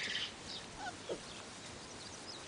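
Quiet outdoor background with a few faint, brief animal calls, short chirp-like sounds that glide in pitch.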